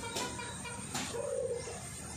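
A pigeon cooing once, briefly, a little over a second in, over a steady low background hum.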